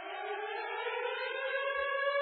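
A steady electronic tone with overtones swells in from silence and glides slowly upward in pitch before levelling off, like a siren winding up; it opens the intro music.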